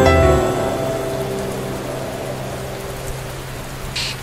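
Rain falling, an even hiss that slowly grows quieter, with the last notes of soft music dying away in the first half second.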